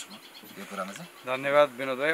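Insects buzzing in the undergrowth during a short pause in talk, with a man's voice coming back a little over a second in.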